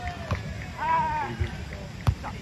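A player's drawn-out, high-pitched call about a second in during beach volleyball play, after a short knock near the start that fits a hand striking the volleyball.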